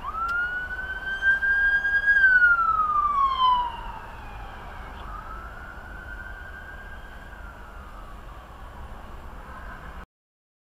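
Police cruiser siren in a slow wail: the tone rises, holds and falls, loudly over the first four seconds, then rises and falls again more faintly. It is heard from inside a car over steady road noise.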